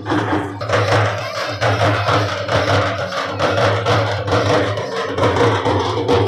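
Procession drumming: large hand-held frame drums beaten with sticks in a fast, even rhythm, over a steady low hum.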